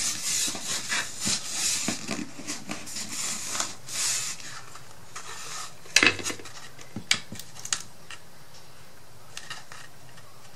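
Hands rubbing and smoothing a glued paper lining down inside an MDF wood frame: a run of scratchy rubbing for about four seconds. Then a sharp knock about six seconds in and a few lighter clicks as the frame is handled and turned on the table.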